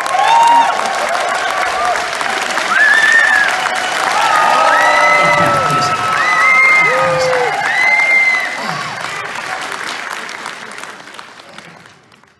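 Theatre audience applauding and cheering after a song, with long held cheering calls over the clapping; it dies away near the end.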